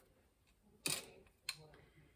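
Two short, sharp clicks about half a second apart, from a plastic water bottle being handled and set aside.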